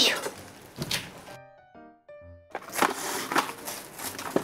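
Kitchen knife cutting through a cabbage onto a plastic cutting board, two crunchy thunks, the first the loudest. A short musical jingle plays for about a second, then cling film crinkles as it is pulled around the cut cabbage.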